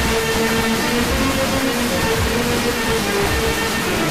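Music broadcast by Algeria's Chaîne 1 on 94.0 MHz, heard through a long-distance FM signal carried by sporadic-E propagation. A melody of held notes plays over a steady hiss.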